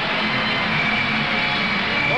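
Ice-dance program music playing over the arena's sound system, with a long held high note.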